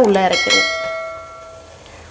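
A single bright metallic ding, like a bell, struck once and ringing away over about a second and a half.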